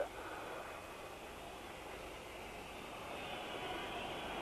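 Faint, steady hiss of a telephone broadcast line with no voice on it, getting slightly louder about three seconds in.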